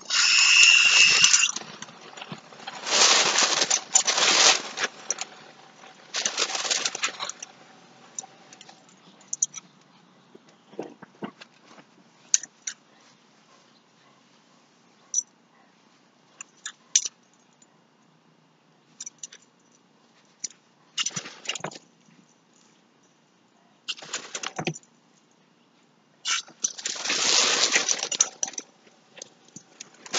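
Lawn sprinkler spray sweeping over the grass near the microphone: a hiss of water that comes in repeated surges a second or two long as the jet passes, with a few faint clicks in between.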